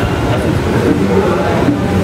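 Steady rumble of a passing train, with voices murmuring underneath.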